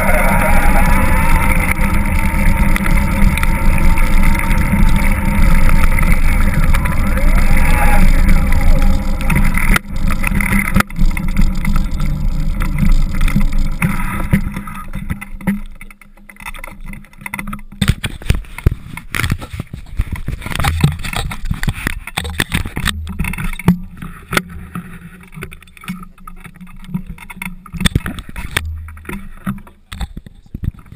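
Wind rushing over the microphone of a handlebar-mounted action camera on a moving bicycle, loud and steady for about the first half. From about halfway in it turns quieter and choppier, with many small clicks and knocks.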